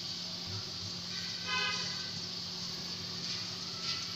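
Chopped onions frying in oil in an aluminium pot, a steady sizzle. A single horn-like toot sounds for about a second, starting about a second in.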